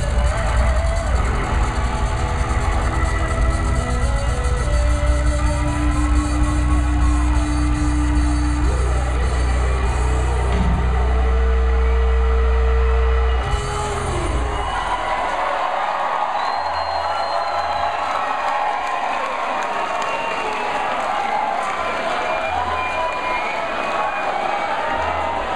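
Live rock band ending a song on long held notes over heavy bass, cutting off abruptly about halfway through, followed by the club crowd cheering and shouting.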